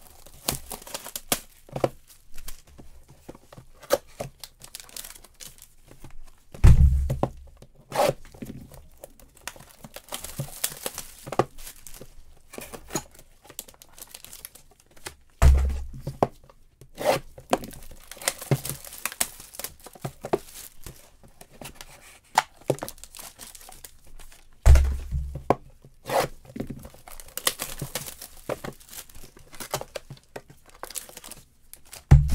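Trading-card boxes and their packaging being opened by hand: tearing and crinkling of wrappers and cardboard with many small clicks and rustles. Three dull thumps, the loudest sounds, come at roughly even spacing about nine seconds apart.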